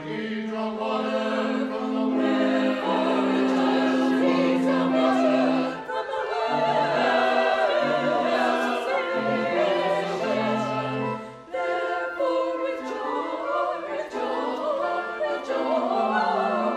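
Choir singing, with long held notes and short breaks between phrases about six and eleven and a half seconds in.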